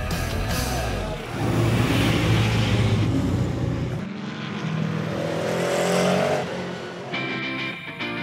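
GT race car engine at speed, its pitch rising twice as it accelerates past, with music underneath. Near the end, guitar music takes over from the engine.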